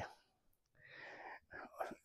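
Mostly quiet pause in a man's speech: a faint in-breath about a second in, followed by small mouth sounds just before he speaks again.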